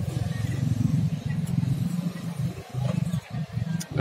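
A low rumble that rises and falls in level.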